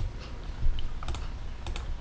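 A few light computer keyboard and mouse clicks, with a close pair about a second in and another pair near the end, over a faint steady low hum.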